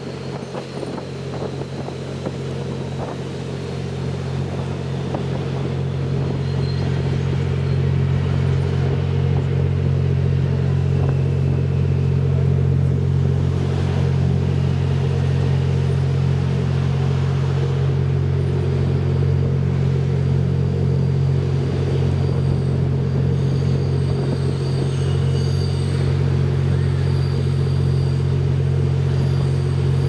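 Twilight Express Mizukaze diesel-electric hybrid train running, heard from its observation deck: a steady low engine drone with rail rumble underneath. It grows louder over the first several seconds and then holds steady, with a few sharp clicks from the wheels on the track early on.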